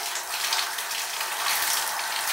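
Water running from a handheld shower sprayer, a steady hiss of spray, used to rinse cleanser off a fiberglass tub with hot water.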